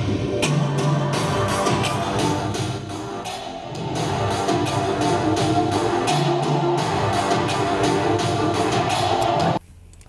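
An unfinished music track with a steady beat played back in a producer's studio, cut off suddenly just before the end.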